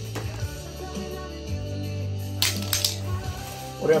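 Background music with a steady low bass line, and a brief crinkle of a clear plastic bag being handled about two and a half seconds in.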